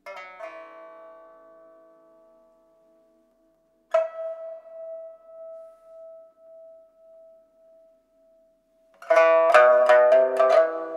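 Pipa playing a slow, sparse passage. A plucked chord rings and fades, a single note struck about four seconds in rings on with a slow waver, and a quicker, louder run of plucked notes begins near the end.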